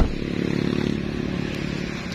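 Traffic on a busy main road: motorcycle engines running past in a steady rumble. A sharp knock comes at the very start.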